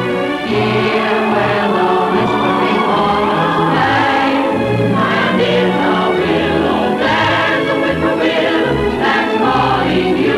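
A choir singing with an orchestra in long held notes, from a 1930s Hollywood film-musical number.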